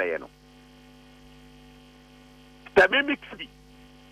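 Steady electrical mains hum, one low tone with higher overtones, under the audio. A voice breaks in briefly at the start and again about three seconds in.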